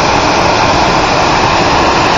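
Loud, steady rush of water jetting at full force from the outlet tubes of Lucky Peak Dam during a release.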